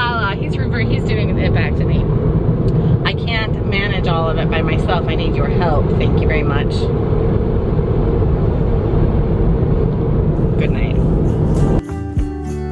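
Steady road and engine rumble inside a moving car's cabin. It cuts off just before the end, when music begins.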